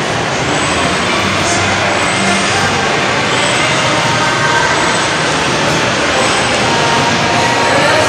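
Steady, loud background din of a busy shopping mall, picked up by a handheld phone microphone while walking. No single source stands out.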